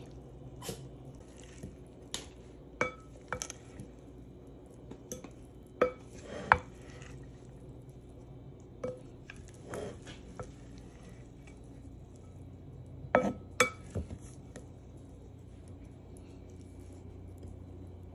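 Pasta salad being tossed in a ceramic bowl: a utensil knocks and scrapes against the bowl, with about ten short clinks spread out and a few close together near the end, and soft moist shuffling of the pasta between them.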